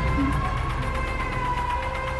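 Film soundtrack: a single high sustained tone that wavers slowly and slightly in pitch, siren-like, over a low rumble.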